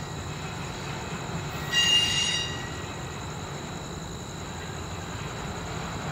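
Norfolk Southern intermodal stack train rolling slowly round a sharp curve: a steady low rumble of wheels on rail, with a brief high-pitched wheel flange squeal about two seconds in.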